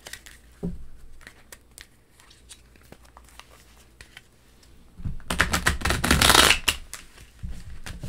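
A deck of cards being handled and shuffled: scattered light clicks and taps, then a dense run of rapid card flicks lasting about two seconds, starting about five seconds in.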